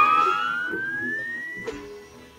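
Isolated pedal steel guitar: one sustained note bending slowly upward in pitch and fading away, with a faint click near the end.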